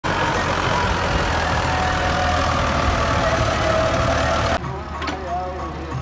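Tractor engine running loud and steady as it pulls a loaded trolley along a dirt track. The sound drops suddenly, about four and a half seconds in, to a quieter engine.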